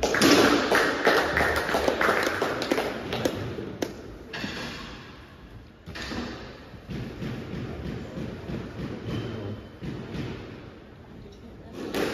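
Scattered thumps and taps echoing in a squash court, busiest in the first few seconds and sparser after that, with some low voices.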